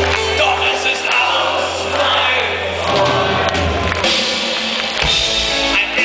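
Live rock music: a band playing, with a male lead singer singing into a microphone.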